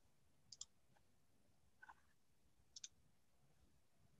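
Near silence broken by a few faint computer mouse clicks: a quick double click about half a second in, a softer single click near two seconds, and another double click near three seconds.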